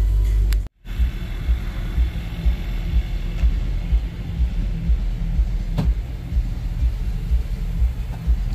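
Bass-heavy music from the truck's Kicker Comp subwoofers, heard from outside the cab: a deep bass beat about two pulses a second, with little of the music above it. It starts after a sudden short dropout, and there is one sharp click about six seconds in.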